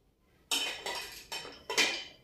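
Square white ceramic plates clinking against each other as they are stacked upright in a wooden plate stand: four sharp ringing clinks, the last the loudest.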